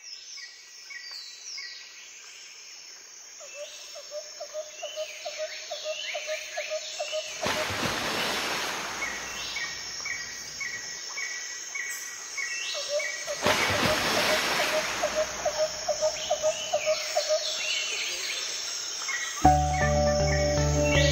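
Quiet nature-sound break in an ambient background music track: bird chirps, a pulsing insect-like trill and two slow whooshing swells, with the track's bass and beat coming back in just before the end.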